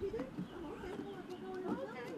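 Indistinct talking, too unclear to make out words, with a few light footsteps on wooden steps.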